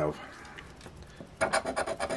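A coin scraping the scratch-off coating from a lottery ticket: after a brief lull, a quick run of short rasping strokes starts about one and a half seconds in.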